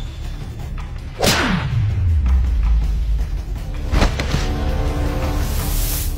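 Dramatic soundtrack of whoosh sound effects over music. A sweeping whoosh falls into a long low rumble about a second in, a sharp hit comes about four seconds in, and a hissing swell rises near the end.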